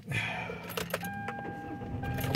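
Sharp clicks and rattles of something being handled inside a car, over a steady low hum. A steady high tone comes in about a second in.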